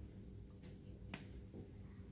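Two short, sharp wooden clicks about half a second apart, the second louder, like a wooden chess piece being set down on a board, over faint room hum.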